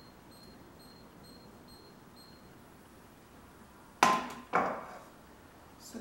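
A metal frying pan set down on a glass cooktop: two sharp clanks about half a second apart, the first ringing briefly.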